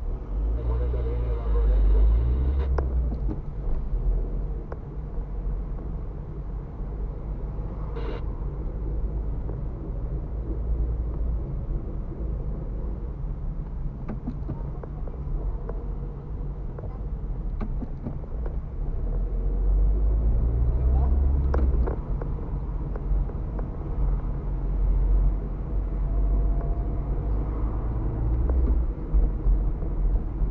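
Road and engine noise inside a moving car's cabin: a steady low rumble that grows louder about two seconds in and again around twenty seconds in, with a few faint clicks.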